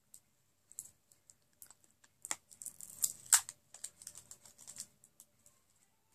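Small plastic clicks and light clatter from lipstick tubes and caps being handled. A few scattered clicks give way to a busy run of clicking in the middle, with one sharp click at its loudest.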